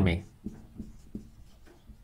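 Marker pen writing on a whiteboard: a few faint, short strokes and taps as an arrow and a word are written.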